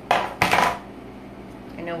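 Metal wire cake leveler being put down on the cutting mat and board: two quick clattering knocks within the first second.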